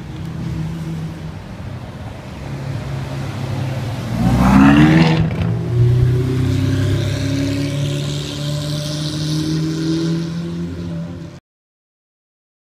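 Sports car engine revving hard and accelerating away, with a sharp rise in pitch about four seconds in that is the loudest moment, then pulling on with climbing engine notes. The sound cuts off abruptly near the end.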